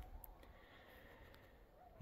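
Near silence: faint outdoor background noise with a couple of tiny ticks.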